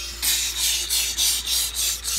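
Scratchy rubbing on carpet, repeated about four times a second, as a hand works a robed action figure over the carpet pile.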